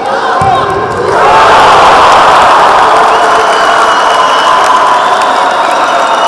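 Spectators in the hall cheering and shouting loudly for a goal, swelling about a second in and staying loud. A single sharp thump comes just before the cheering.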